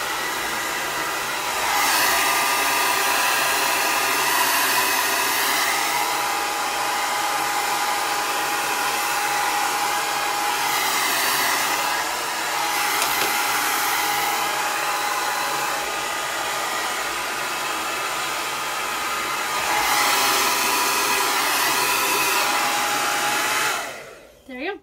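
Le Compact hand-held hair dryer blowing steadily, with a faint whine over its rush of air, while hair is blow-dried through a vented brush. It swells louder twice for a few seconds and is switched off right at the end.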